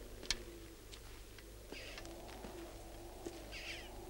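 Faint outdoor ambience with a bird calling twice in short raspy calls, over a low steady hum, with a sharp click just after the start and a few softer clicks.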